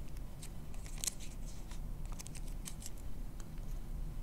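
Paper being handled at a desk: a scatter of faint, crisp, irregular clicks and rustles, as slips of paper are cut or written on.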